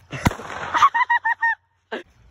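A sharp click and a burst of noise, then four short honks in quick succession, each dipping in pitch at its end, cut off abruptly.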